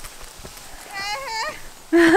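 A woman's short, high-pitched laugh, wavering up and down, about a second in.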